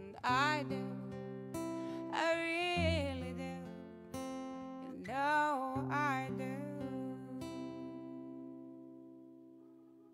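A woman singing over a strummed acoustic guitar, the song closing on a final guitar chord about seven seconds in that rings on and fades away.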